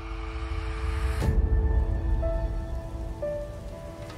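Logo-reveal intro music: a hissing riser swells and ends in a deep bass hit about a second in, followed by held tones over a heavy low bass.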